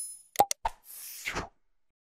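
Edited-in pop sound effects: a few quick pops about half a second in, followed by a short rush of noise that stops about a second and a half in.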